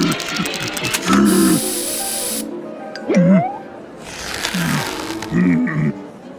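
Cartoon sound effect of an aerosol spray can: a quick rattle of shaking, then a loud hiss of spray for about a second. It plays over cartoon music, with short grunting vocal sounds from a character.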